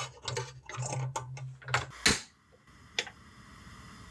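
Gas stove burner being lit under a saucepan: the spark igniter ticks rapidly for about two seconds, the flame catches with a short low whump, and then the burner hisses steadily.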